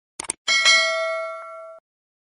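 A quick double mouse click, then a notification-bell sound effect: a single ding that rings on for about a second before cutting off abruptly.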